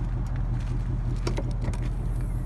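Ford Mustang GT's 5.0-litre V8 idling steadily, with a few light clicks near the end as the trunk lid unlatches and opens.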